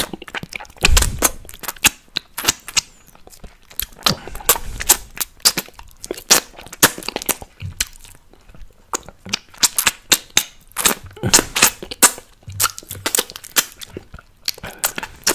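Close-miked wet mouth sounds of sucking and licking a hard apple-flavoured candy: rapid sharp clicks, pops and smacks of lips and tongue, coming in bursts with brief lulls.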